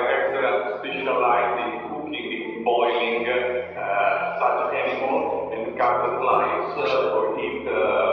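A man's voice talking continuously.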